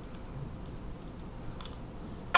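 Keys on a key ring clinking faintly as they are handled and sorted, with one small sharp click about one and a half seconds in.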